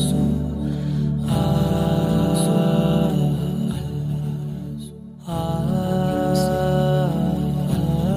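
Background vocal music without instruments: voices chanting long, held 'ah' notes in harmony, with a brief dip about five seconds in.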